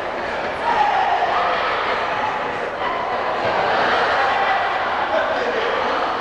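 Crowd of many voices talking and shouting together, with no single clear speaker.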